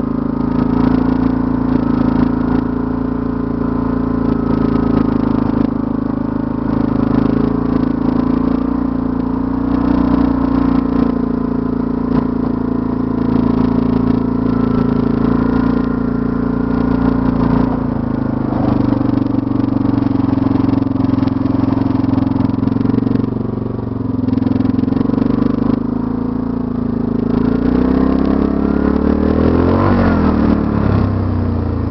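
Yamaha Grizzly 660 ATV's single-cylinder four-stroke engine running steadily while plowing snow. Its pitch shifts about two-thirds of the way through, and it revs up near the end.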